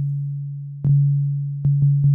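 Korg Volca Drum playing a low pure sine-like tone through its multi-trigger amp envelope. The note restarts with a click about a second in and twice more near the end, fading slowly after each restart, as the envelope attack, which sets how quickly the retriggers come, is being changed.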